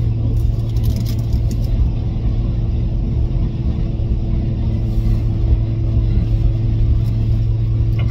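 Steady low hum of a car's engine idling, heard from inside the parked car's cabin. A few faint clicks come in the first two seconds.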